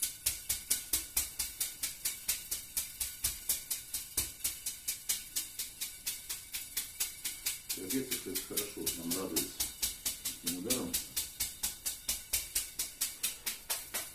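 A bundle of thin metal rods, a metal massage whisk, slapping rapidly and evenly on a person's clothed back, about five strikes a second, in a steady unbroken rhythm.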